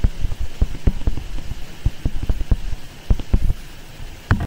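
Pen stylus tapping and scratching on a tablet surface while handwriting: an irregular run of sharp taps, several a second, thinning out near the end.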